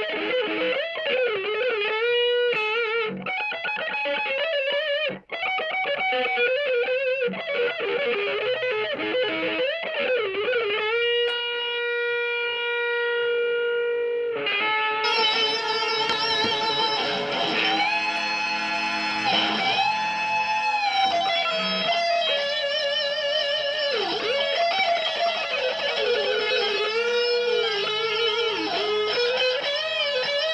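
Stratocaster-style electric guitar playing a fast melodic lead line, with vibrato on the sustained notes and one note held for several seconds. About halfway through, the sound fills out and thickens.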